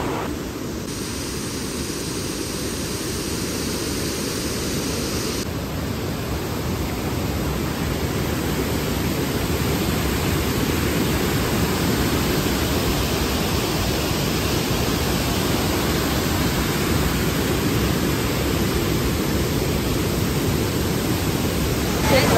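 Steady rushing of a full-flowing waterfall, heavy white water pouring over rock ledges, growing a little louder over the first several seconds.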